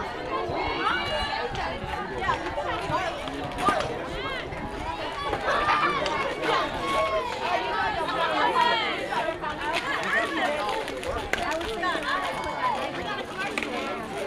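Several high voices chattering and calling out at once, overlapping throughout, as players chatter around a fastpitch softball diamond. One sharp knock about four seconds in.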